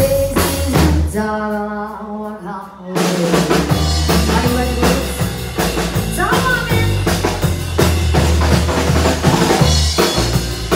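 Live bar band playing with drum kit and bass guitar under a woman's vocals. About a second in, the drums drop out for about two seconds, leaving a held pitched line, then the full band comes back in with a steady kick-and-snare beat.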